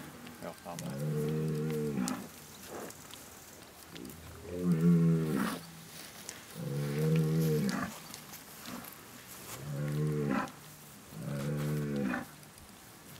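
Bazadaise cattle mooing: five drawn-out moos, one every two to three seconds, the second the loudest.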